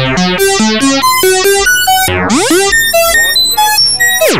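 Eurorack modular synthesizer playing a fast sequence of short, harmonically rich notes through a wave folder and ring modulator, about five notes a second at jumping pitches. About halfway through, one note swoops upward in a quick rising sweep, and near the end a few high, thin tones ring out.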